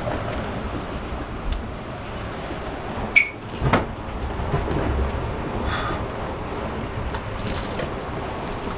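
Sailing catamaran underway in heavy seas: a steady rush of wind and water against the hull, with a sharp creak and a knock just past three seconds in.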